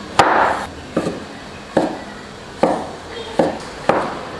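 Chinese cleaver slicing king oyster mushrooms on a wooden cutting board: about six separate chops, each a short knock of the blade striking the board, a little under one a second.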